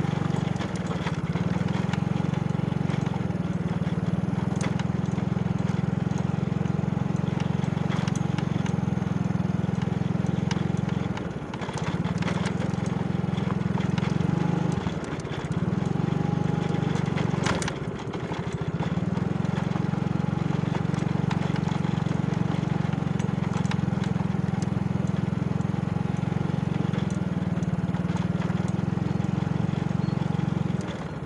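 Small motorcycle engine running steadily at low speed, with three brief dips around the middle as the throttle eases off and comes back on. Scattered knocks and rattles come from the bike jolting over the broken dirt path.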